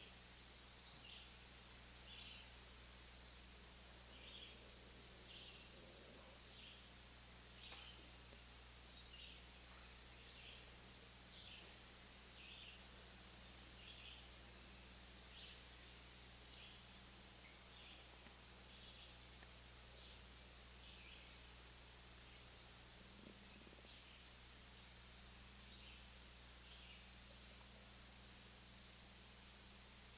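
A bird chirping faintly, short high calls about once a second, over a steady recording hiss and low hum.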